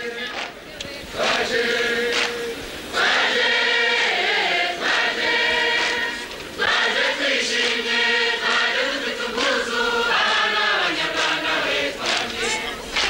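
A large chorus of performers singing a traditional Rwandan song in unison, in phrases of a few seconds with held notes.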